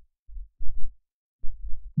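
A few low, muffled thumps with nothing above the bass.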